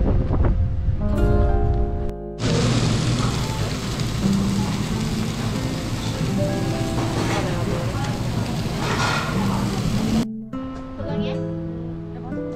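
Pork belly, prawns and abalone sizzling on a tabletop grill plate: a steady hiss for about eight seconds, with background music under it. Background music alone before and after the hiss.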